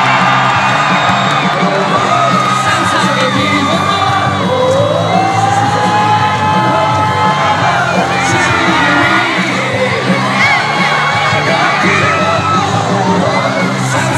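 Music playing over the stadium speakers with a steady low bass, under a crowd of fans shouting, whooping and cheering as signed baseballs are handed out and tossed into the stands.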